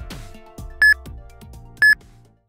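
Interval timer's countdown beeps, one short high beep each second as the exercise round ticks down to its end, over background electronic music with a deep kick drum.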